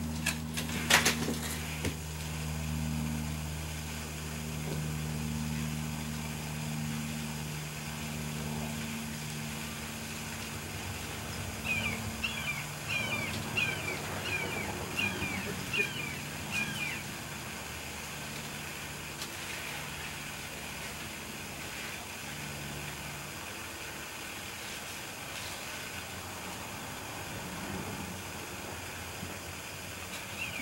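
Outdoor ambience: a low steady hum that fades away over the first twenty seconds or so, and a bird chirping a quick run of about eight notes about twelve seconds in.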